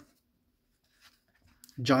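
Faint sliding and a couple of light ticks from Magic: The Gathering trading cards being moved through a hand-held stack.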